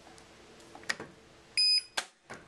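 Front-loading washing machine's control panel giving one short, high electronic beep about a second and a half in as its Start button is pressed, confirming the cycle has started.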